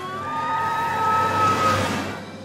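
Cartoon emergency siren wailing: one rising wail that holds its pitch and grows louder over a rushing sound, as if a rescue vehicle is approaching. It stops near the end.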